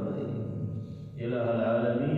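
A man's voice intoning a supplication in a drawn-out, chant-like way, with long held notes and a short pause about a second in before the voice resumes.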